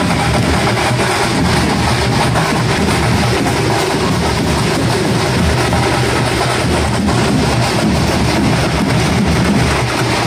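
Loud music with a heavy drum beat and deep bass, running steadily throughout.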